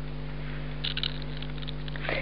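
Steady low hum under a background hiss, with a brief patch of faint soft clicks about a second in.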